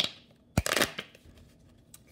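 A deck of tarot cards being shuffled by hand, in two short bursts of card noise: one at the start, and a louder one about half a second in that lasts about half a second.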